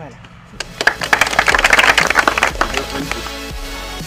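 A group clapping, starting about half a second in and dying away after about two seconds. Background music comes in near the end.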